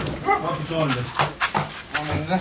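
A dog barking and whimpering in short pitched calls among people's voices, with a few sharp knocks.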